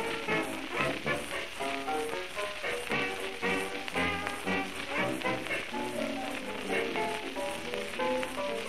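1920s dance orchestra playing an instrumental foxtrot passage, a steady dance beat under ensemble melody, heard from a 1926 78 rpm shellac record with surface hiss and crackle throughout.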